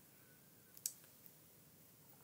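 Near silence: quiet room tone with a single short, sharp click a little before a second in.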